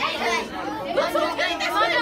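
Chatter of several people talking at once, with overlapping voices throughout.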